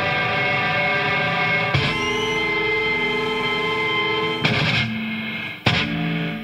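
Punk rock band playing live: distorted electric guitar and bass hold ringing chords that change about three times, with a short sudden break and a fresh chord hit near the end.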